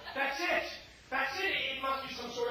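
Speech: a voice talking in two short phrases with a brief pause near the middle.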